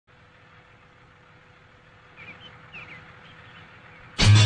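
Faint background hiss with a steady low hum, and a few brief high chirps, like small birds, a little after the middle.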